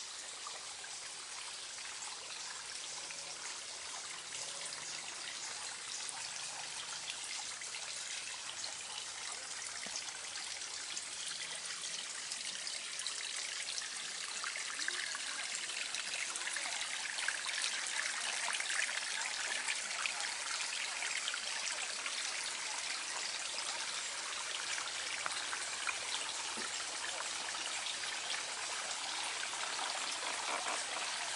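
Shallow water trickling over rounded stones in a garden stream, a steady rushing trickle that grows somewhat louder about halfway through.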